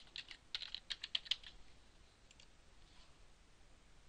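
Computer keyboard keys tapped in a quick run while typing a password, for about the first second and a half, then a few faint taps.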